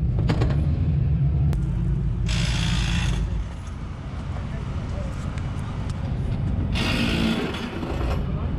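Low steady rumble of a dirt-track sportsman race car's engine idling, which drops away a little past three seconds in. Two short rough rubbing rushes of the camera being handled, about two seconds in and near the end.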